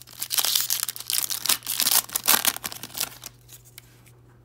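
Foil trading-card pack wrapper crinkling as it is torn open and peeled off the cards. The rustling stops about three seconds in.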